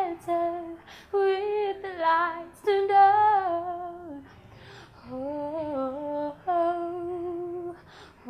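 A young woman singing a cappella in slow, held phrases that waver in pitch, with short gaps between them. The phrases in the second half are lower and softer.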